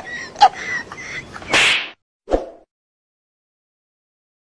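Two sharp hits in the first half-second, then a loud hissing whoosh about a second and a half in and a single thump about a second later: a transition whoosh-and-hit sound effect.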